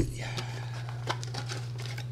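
A cardboard trading-card box and its card packs being handled: light crinkling and rustling with a few small clicks, and a thump right at the start. A steady low hum runs underneath.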